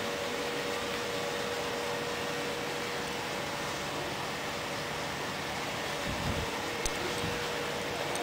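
Steady background hiss with a faint constant hum, and a brief low rumble about six seconds in.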